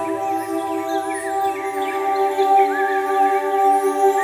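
Sustained, steady synth-pad chord of intro music, with short bird-like chirps laid over it.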